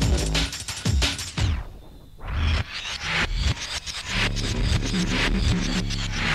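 Live drum and bass DJ mix with fast breakbeat drums and heavy bass. About a second and a half in, the sound sweeps down and drops out for under a second before the full beat comes back in.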